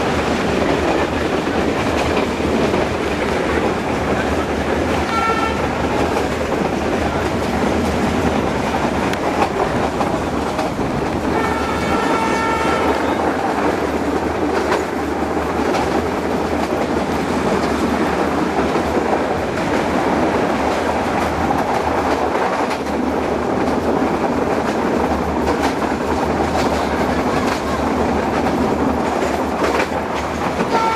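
Meter-gauge passenger train running steadily, wheels clattering over the rail joints under a continuous rumble. A train horn sounds briefly about five seconds in, and again for longer around twelve seconds in, stepping from a higher note to a lower one.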